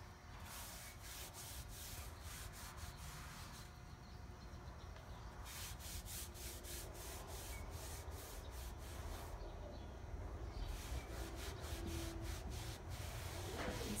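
Cotton t-shirt rag rubbing over a dried, Vaseline-greased painted wooden door in many quick wiping strokes, faint, with a couple of short pauses. This is the wiping off of the Vaseline that lets the paint lift for a peeled-paint finish.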